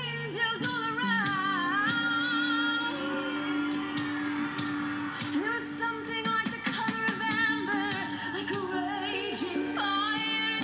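Worship song: a woman singing a wavering melody with vibrato over a sustained low held note.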